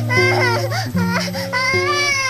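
A toddler crying in two long, wavering wails over background instrumental music.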